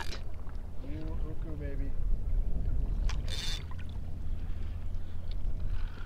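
Steady low rumble of wind and water on the microphone of a kayak at sea, with a short hiss about three seconds in.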